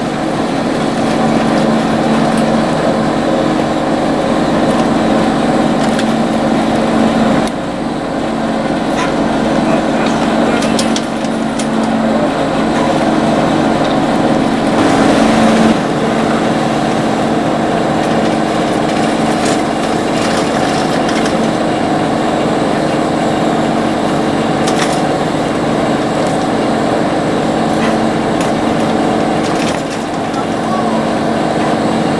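Chairlift machinery running with a steady mechanical hum at the loading station, with a few sharp clicks and knocks from the moving chairs and equipment.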